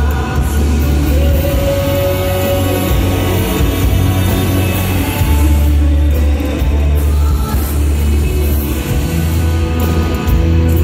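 Live band music at concert volume, heard from the audience: a strong, steady bass line with electric guitar and drums, and a singer on top.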